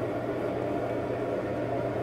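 Steady background hiss with a faint low hum: the constant noise of a small room, with no distinct event.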